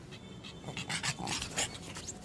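A pug panting, faint and quick.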